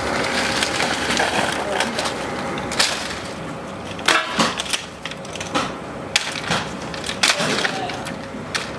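Hard plastic crates being handled and tossed onto a heap of scrap crates: a rustling clatter at first, then a series of sharp knocks and cracks as crates land on the pile.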